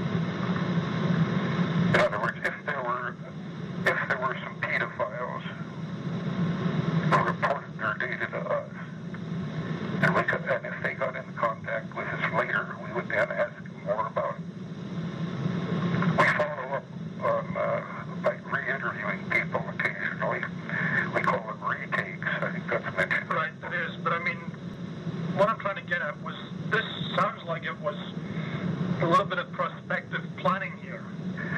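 Two men talking in an old taped interview recording, sounding muffled and dull with little treble.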